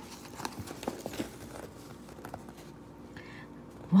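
Paperback picture book being opened by hand, its cover and pages turning: a scattering of soft paper taps and light rustles.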